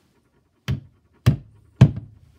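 Hammer driving nails into a wall: three sharp strikes about half a second apart, each louder than the last.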